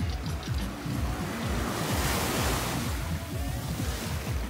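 A small wave washing up on a sandy beach, swelling and then fading in the middle, over background music with a low bass line.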